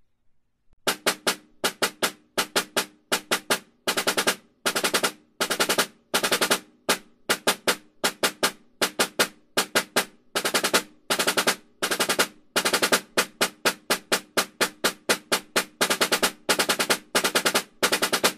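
Concert snare drum played with wooden sticks: five-stroke rolls, with the doubles played by finger pressure, repeated in a steady rhythm of short clustered groups of strokes. It starts about a second in.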